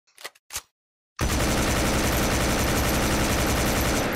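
Automatic gunfire sound effect: two short clicks, then about a second in a loud, continuous burst of very rapid fire.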